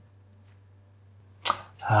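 Quiet room tone with a faint steady low hum, broken about one and a half seconds in by a short sharp click. A man's voice starts just at the end.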